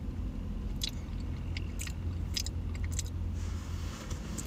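Steady low hum of a parked car's idling engine heard from inside the cabin, with a few short, faint clicks in the first three seconds.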